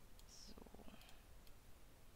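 A few faint computer mouse clicks, made while picking a brush and closing the brush picker in Photoshop.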